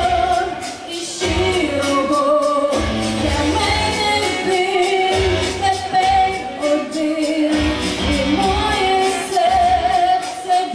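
Amplified pop music played through loudspeakers, with a woman singing a melody over a steady beat.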